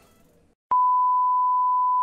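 A steady, unbroken high test-tone beep, the reference tone that goes with TV colour bars. It starts abruptly with a click about two-thirds of a second in, after a moment of near silence.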